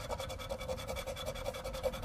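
A scratch-off lottery ticket being scratched with a poker-chip-style scratcher: fast, even back-and-forth strokes scraping off the ticket's coating.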